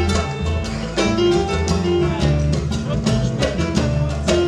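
Grand piano played live: a quick, rhythmic run of struck notes and chords over sustained low bass notes.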